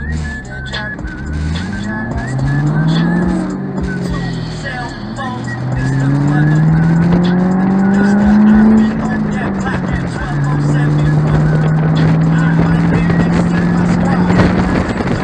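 Ford Mustang convertible's engine accelerating through the gears: its pitch rises, drops at a shift near four seconds, rises again, drops near nine seconds, then holds steady at cruise. Heard from the open-top cabin with wind noise and music from the car stereo underneath.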